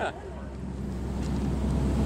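A boat's engine droning low and steady under wind noise on the microphone, growing gradually louder.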